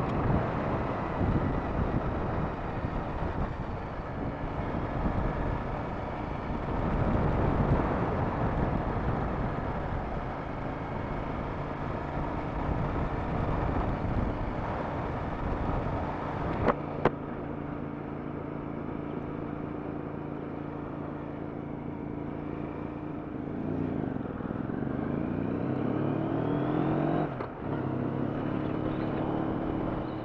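Triumph America's 865cc parallel-twin engine running under way, heard through heavy wind noise on the helmet microphone. About 17 s in there is a click, after which the wind drops and the engine's steady note stands out; near the end it rises in pitch, breaks off briefly, and settles again.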